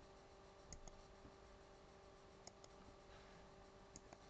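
Near silence with a few faint computer-mouse clicks, two quick pairs and then a single click near the end, over a faint steady hum.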